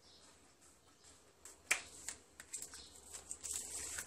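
Scissors snipping through a thin sheet of warqa pastry: a few sharp snips, the loudest a little under two seconds in, followed by scattered lighter clicks and soft handling of the pastry.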